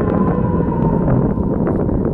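Wind buffeting the microphone outdoors: a steady, loud low rumble with no distinct events.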